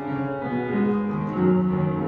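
Instrumental accompaniment playing the closing chords of a gospel song after the vocals have ended: held notes that step from one pitch to the next.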